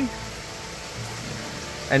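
Steady rush of circulating water with a faint steady hum, from the koi pond's waterfall and pump.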